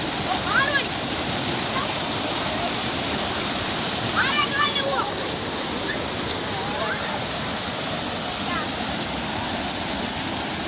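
Rushing water of a small rocky river cascade, a steady, even noise throughout. Children's voices call out over it a few times, most clearly about four seconds in.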